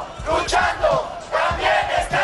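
A crowd of demonstrators shouting together in loud, repeated bursts of many overlapping voices.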